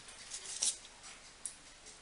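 Knife blade cutting strips into raw puff pastry on baking paper: faint scraping strokes about half a second in, then a short tick near the middle.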